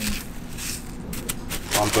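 Panko breadcrumbs crunching and rustling as a fish fillet is pressed down into them on a plastic plate by hand.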